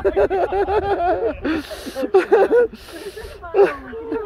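People laughing in quick, repeated bursts, with two short hissing noises about one and a half and three seconds in.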